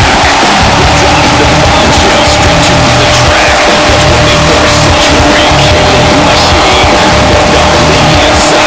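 Loud music laid over a burnout: a fourth-generation Camaro's LS1 V8 held at steady high revs while its rear tyres spin on the pavement.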